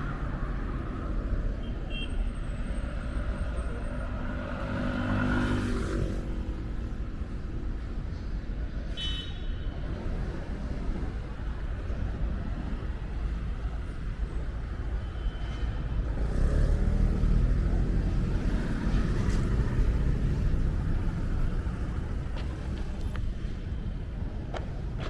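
City road traffic: cars driving past with a steady low rumble. One vehicle passes about five seconds in, and the traffic swells louder for several seconds past the middle.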